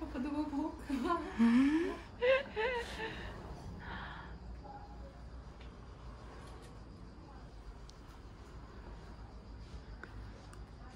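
A woman's voice making short wordless exclamations in the first three seconds, one of them rising in pitch, then quiet room tone.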